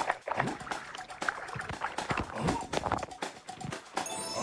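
Water sloshing and bubbling irregularly around a camera held under water, with background music underneath.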